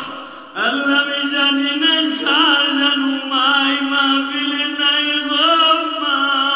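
A man's voice chanting a sermon in long, drawn-out melodic phrases into a microphone, the held notes wavering and gliding in pitch. A short drop for breath comes about half a second in.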